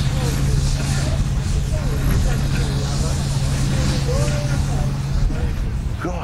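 A steady low machinery hum with a deep rumble under it, over distant crowd chatter; the hum stops about five seconds in.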